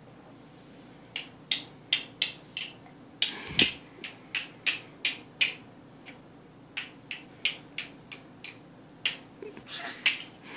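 Hard plastic shape-sorter pieces being clacked and tapped together in a baby's hands. It is a run of sharp, uneven clicks about three a second, starting about a second in, with one duller knock a few seconds in.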